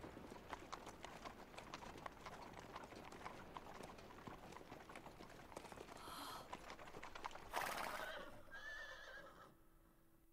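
Faint clip-clop of horses' hooves at a walk, an irregular run of light ticks that thins out near the end.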